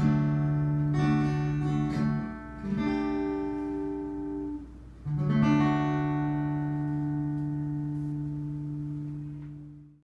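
Acoustic guitar strumming a few chords, then about five seconds in a final chord is struck and left to ring, slowly dying away to close the song.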